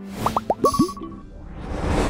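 Cartoon-style bubble-pop sound effects: four quick upward-gliding bloops, each lower than the last, with a short steady ding among them, then a whoosh swelling up near the end, over background music.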